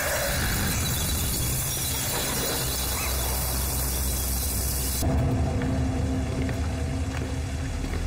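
Film soundtrack effects: a steady rumbling, hissing noise bed under a low drone, with a short whoosh at the start and an abrupt change in the sound about five seconds in.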